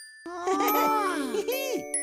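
A cartoon character's wordless voice sound that rises and then falls in pitch, with a quick bouncy up-and-down sweep about a second and a half in, over ringing chime tones.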